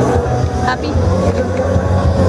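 Live rock band playing loudly, with steady low bass notes under held guitar notes and a brief sharp accent about a second in.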